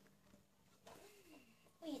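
Near silence: room tone, with a faint voice murmur a little after a second in.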